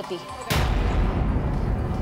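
A sudden boom sound effect about half a second in, followed by a deep rumble that carries on.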